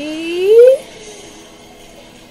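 A child's voice holding a long, drawn-out suspense note that rises in pitch and cuts off about a second in. Only faint room background follows.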